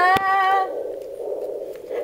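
A young voice singing, holding a final rising note that ends under a second in. A single click comes just after the start, and a steady hum runs underneath.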